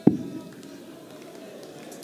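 A steel-tip dart striking the bristle dartboard: one sharp thud right at the start, followed by a faint steady arena background.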